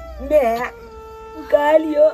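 A young man's voice making dog-like whining, howling cries in imitation of an animal: two short bending cries, one near the start and one just before the end.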